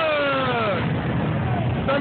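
Motorcycle engines idling in a steady low rumble, with a person's voice calling out over it in the first second.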